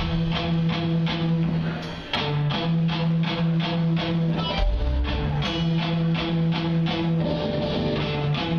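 Live rock band playing the start of a song: strummed electric guitar, bass guitar and drums in a steady beat of about four hits a second, with a short break about two seconds in.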